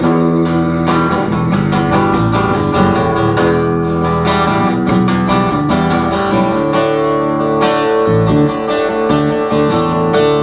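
Acoustic guitar and electric bass playing a song live, in an instrumental passage with steady strumming over a bass line.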